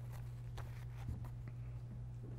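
Quiet room tone with a steady low electrical hum, and a few faint, brief rustles of paper sheets being handled.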